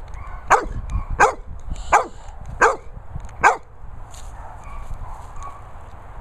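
A dog barking five times in quick succession, about two-thirds of a second apart, each bark dropping in pitch; the barking stops about halfway through.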